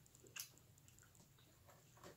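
Near silence at a meal, with one faint click of cutlery against a plate about half a second in and a few fainter ticks.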